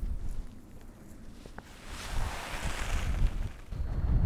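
Wind buffeting the microphone with a low rumble, and a louder rush of wind for about a second and a half in the middle.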